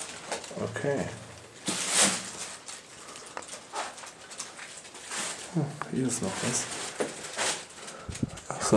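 A man murmuring a few low, indistinct words, with short scuffs and rustles of movement in between, in a small reverberant concrete room.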